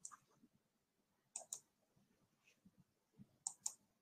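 Faint computer mouse clicks, two quick double-clicks about two seconds apart, over near silence.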